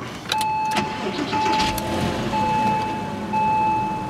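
2004 Porsche Boxster's 2.7 L flat-six engine being started from inside the cabin and settling toward idle. A steady electronic warning tone sounds over it, repeating about once a second.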